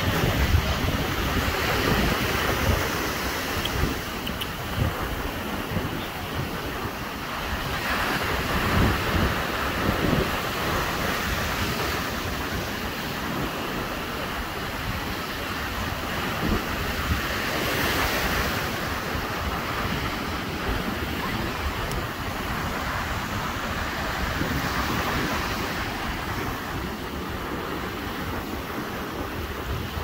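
Wind rushing over a phone's microphone on a beach, with the wash of surf, as a steady noise that swells louder now and then.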